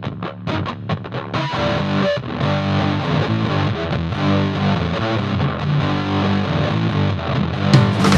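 Instrumental opening of a psychedelic rock song. A distorted, effects-laden electric guitar picks a rhythmic figure and is joined about a second and a half in by a fuller, sustained layer. Near the end the full band with drums comes in louder.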